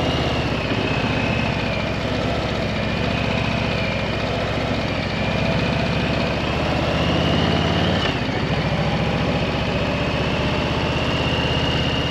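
2021 Harley-Davidson Street Bob 114's Milwaukee-Eight 114 V-twin running steadily while the bike is ridden along at road speed, heard from the rider's position. The engine note dips briefly about eight seconds in, then steadies again.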